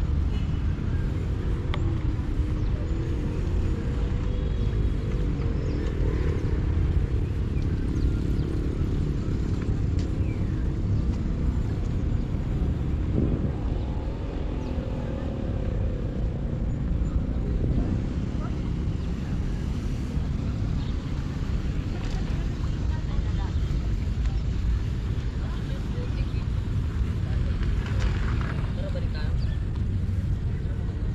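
Steady low outdoor rumble along a riverside walkway, with faint distant voices now and then.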